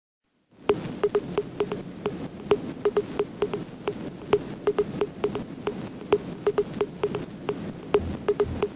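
An intro sound effect: an irregular string of sharp clicks, about three or four a second, each with a short low blip, over a steady hiss, starting about half a second in.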